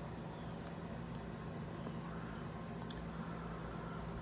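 Steady low background hum of the room, with a few faint ticks.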